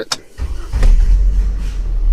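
A 2002 GMC Envoy's inline-six engine being started with the key: the sound comes in about half a second in and settles into a steady low running sound.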